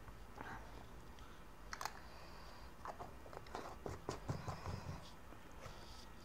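Faint eating sounds: a few light clicks, then a quick run of wet mouth clicks and chewing in the middle.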